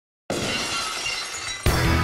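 Glass-shatter sound effect cutting in suddenly about a quarter of a second in and ringing away, then a loud hit of heavy rock music with drums and bass near the end, the logo sting's soundtrack.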